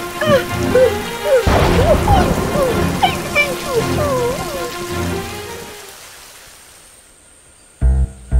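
Heavy cartoon rain falling steadily, with a slow, sad melody of sliding notes over it and a sudden crash of thunder about a second and a half in. The rain and melody fade away over the last few seconds.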